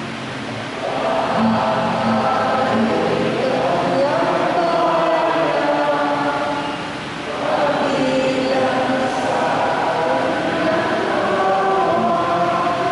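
Church choir singing a slow, chant-like melody with long held notes, the responsorial psalm that follows the first reading at Mass. The singing eases briefly about seven seconds in, between phrases.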